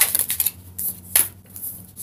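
A deck of tarot cards being shuffled by hand: cards rustling and clicking against each other, with one sharper card snap a little over a second in.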